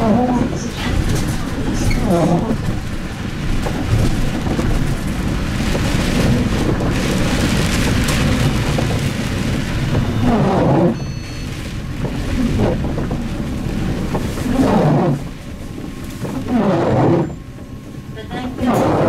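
Cabin noise of a MAN Lion's City CNG city bus driving on a wet road: its natural-gas engine and tyre noise run steadily, then the bus slows and comes to a stop near the end.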